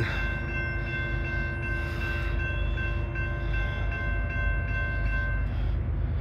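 Railroad grade-crossing warning bell ringing steadily as the gates lower, falling silent shortly before the end, over a steady low rumble.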